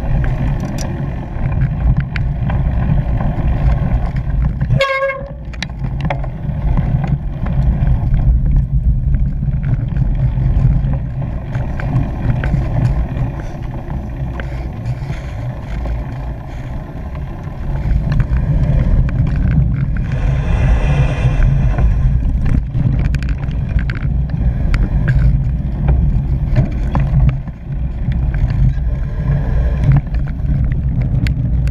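Wind buffeting and rolling rumble on a bike-mounted action camera as a cyclocross bike rides over grass and dirt. A brief high pitched toot comes about five seconds in, and a longer pitched sound around twenty seconds in.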